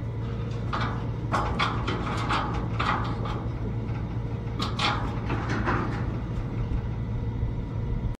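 Irregular scuffing and rustling as a cheetah leaps up against a man and the wire-mesh fence, in two bursts of activity, over a steady low hum.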